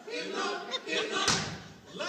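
Several men's voices in short chanted phrases, broken off about a second and a quarter in by a single sharp thump.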